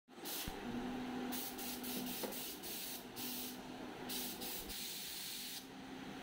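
Paint spray gun hissing in repeated bursts as the trigger is pulled and released, several times over, with a faint low hum underneath.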